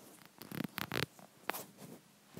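A few short rustling scrapes, clustered about half a second to a second in, with a sharper one about a second and a half in.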